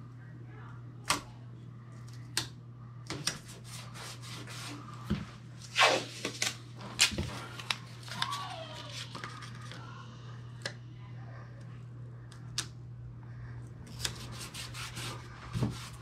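Blue painter's tape being handled, torn and pressed over a door hinge: scattered sharp ticks and short rasping tears. A steady low hum runs underneath.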